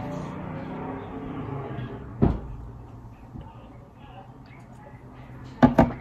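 A small bottle of thickened water being set down on a tabletop: two quick knocks just before the end, after a single knock about two seconds in.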